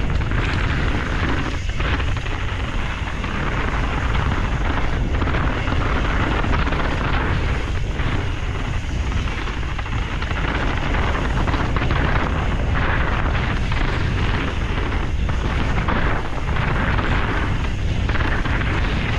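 Wind buffeting a helmet-mounted action camera's microphone during a fast mountain-bike descent on a Canyon Strive enduro bike. Under it is the steady rumble of tyres on a frozen dirt trail, with frequent small knocks as the bike chatters over bumps.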